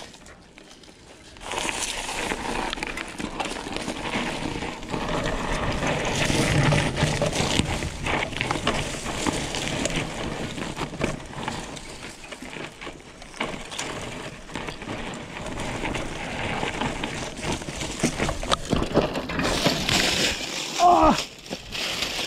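Mountain bike riding down a dirt forest trail, heard close on an action camera: tyre noise over dirt and stones with the bike rattling and wind on the microphone, starting about a second and a half in. Near the end comes a louder scraping burst and a short cry as the rider falls.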